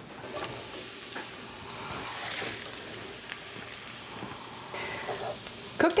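Onions, Swiss chard stalks and zucchini sizzling steadily in butter in a cast-iron skillet, with a few light clicks of a spoon stirring them.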